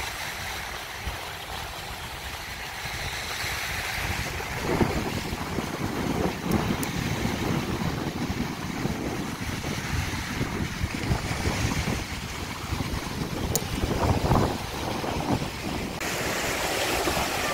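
Small sea waves washing onto a sandy beach, with wind gusting on the microphone from about four seconds in.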